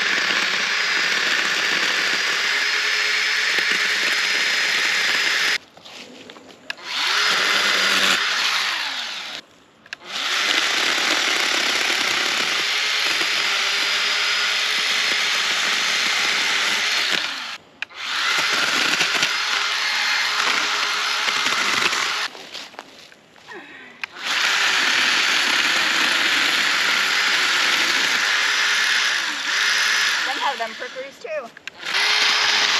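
A small cordless handheld power saw running in long stretches as it cuts brush at ground level, stopping briefly four times.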